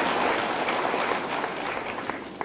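Audience applause in a hall, an even patter that slowly dies away.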